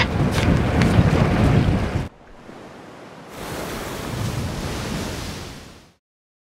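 Wind and sea noise on deck of a sailing boat under way, with wind buffeting the microphone; it cuts off abruptly about two seconds in. A softer wash of waves and wind follows, swells a little and fades out near the end.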